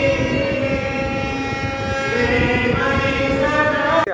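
A woman singing a melodic song with harmonium accompaniment, holding long, sustained notes over the harmonium's steady reedy chords.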